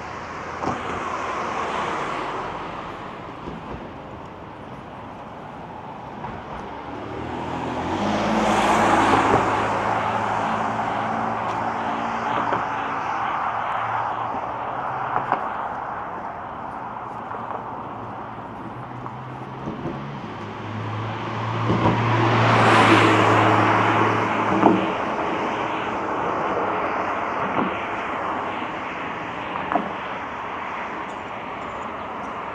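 Cars passing on the road alongside, each swelling and fading over steady traffic noise. A lighter pass comes near the start, the loudest about nine seconds in, and another just past twenty seconds.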